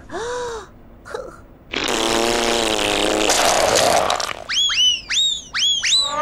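Tubby custard machine's cartoon squirt sound effect: a long, loud buzzing squirt lasting about two and a half seconds as custard squirts onto Po. It is followed by a quick run of four high whistling chirps that each rise and fall.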